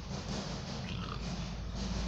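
Steady room background noise between sentences: a constant low hum under an even hiss, with no speech.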